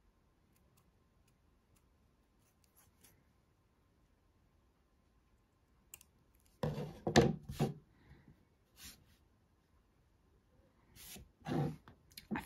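Small metal scissors snipping thin felt: faint, spaced snips at first, then a louder cluster of cutting and handling sounds a little past halfway. Near the end comes a short knock or rustle as the cut piece is handled.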